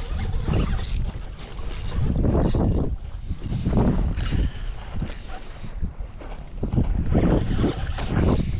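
Wind buffeting the microphone in uneven gusts, with water slapping against a plastic fishing kayak's hull and a few sharp clicks.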